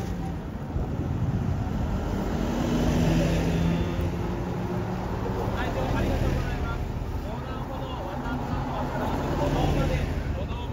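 Full-size city buses driving out of a terminal one after another, their engines running with a low hum under road noise. Voices are faint in the background.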